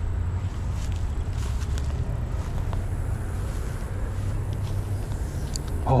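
Steady low drone of motor traffic, with a few faint ticks on top.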